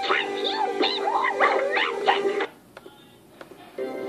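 Cartoon soundtrack played through laptop speakers: music with a high, swooping voice over it that cuts off about two and a half seconds in. A few faint clicks follow, then another clip's music starts just before the end.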